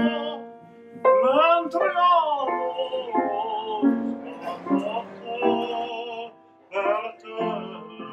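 A solo singer in a trained classical style, holding notes with a wide vibrato and swooping between pitches, with short breaths between phrases, over a piano accompaniment.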